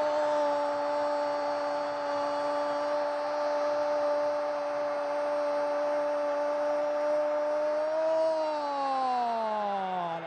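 A male football commentator's long, held "gol" shout: one high note sustained for about eight seconds, then falling in pitch near the end, over crowd noise.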